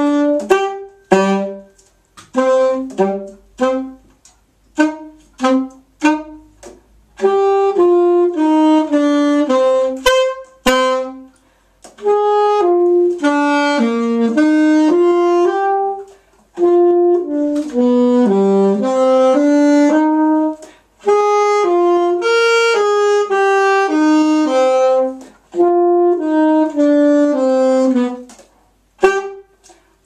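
Alto saxophone played solo as a single melodic line. It starts with short, detached notes for about seven seconds, then moves into longer connected phrases with brief pauses between them.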